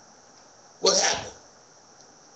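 A man sneezing once: a single sudden burst lasting about half a second, just under a second in.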